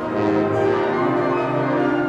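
School symphonic wind band playing a sustained chord, the many notes held steadily.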